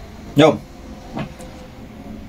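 A man's voice saying one short word, then a pause with a faint steady hum and low background noise.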